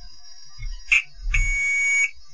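Digital multimeter continuity beeper: a short chirp about a second in, then a steady beep of under a second that cuts off. The probes are across a path through a capacitor, so the beep sounds only while the capacitor charges.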